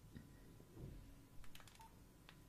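Near silence: room tone, with a few faint clicks about one and a half seconds in.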